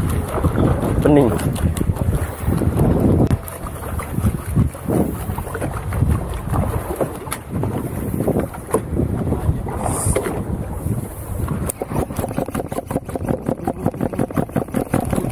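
Wind buffeting the microphone on a small open boat at sea, with muffled voices early on. In the last couple of seconds comes a fast, even run of light clicks as a fishing reel is wound.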